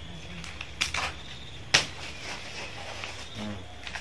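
Dry corn husks being torn and stripped from the cobs by hand: a few crackling tears about a second in and one sharp, louder snap a little later, over a faint papery rustle.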